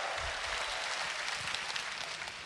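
Large crowd applauding in a big reverberant hall, a dense, steady clatter of many hands clapping.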